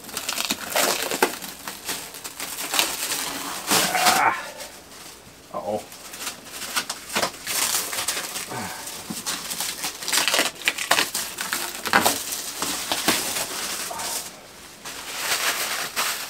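Plastic stretch wrap being cut, torn and peeled off a boxed resin 3D printer, crackling and rustling in a quick run of short bursts.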